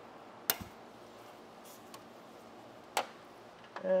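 Two sharp metallic clicks about two and a half seconds apart, with a couple of faint ticks between, from a ratchet with a swivel and locking extension being handled and fitted onto a motor-mount nut.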